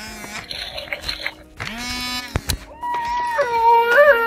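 Galactic Snackin' Grogu animatronic toy playing its recorded eating sounds through its small speaker: short munching noises, a click about two and a half seconds in, then a bending, baby-like cooing call from about three seconds in.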